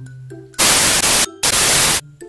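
Background music with a low held note, cut into about half a second in by two loud bursts of static hiss, each a little over half a second long, with a brief break between them; both start and stop abruptly.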